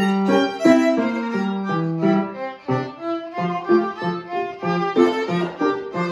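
Violin solo with grand piano accompaniment, played by a young student. A quick tune of short separate notes, with a brief dip in loudness about halfway through.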